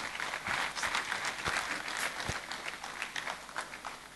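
Audience applauding, the clapping thinning out and dying away toward the end.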